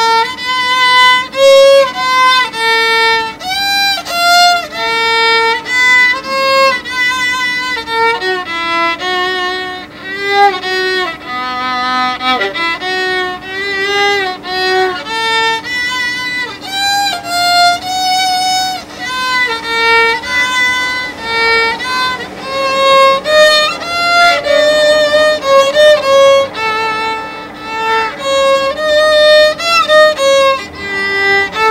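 Solo violin, bowed, playing a slow romantic melody of held notes, each lasting about half a second to a second, with a wavering vibrato on many of them.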